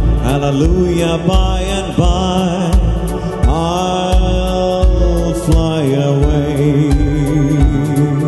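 A man singing a Christian worship song into a microphone, with long gliding held notes, over a band accompaniment of steady bass notes and cymbals.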